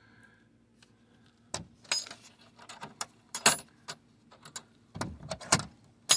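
A zinc-plated metal latch on a wooden nest-box lid being worked by hand: a string of sharp metallic clicks and clinks, the loudest about three and a half and five and a half seconds in.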